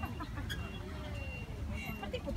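People talking quietly in the background over a low, steady rumble.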